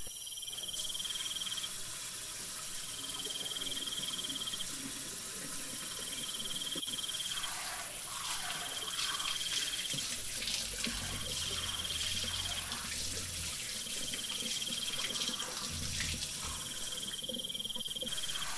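Insect trills, each lasting about a second and a half and repeating roughly every two and a half seconds, over the steady hiss of a running shower.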